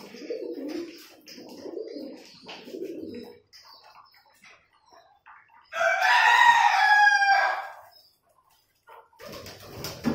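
Domestic pigeons cooing in low, pulsing phrases over light ticking of beaks pecking seed from a plastic tray. About six seconds in, a rooster crows once for about two seconds, the loudest sound; the cooing picks up again near the end.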